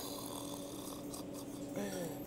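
A steady low hum, with a hiss over it that fades out about a second in.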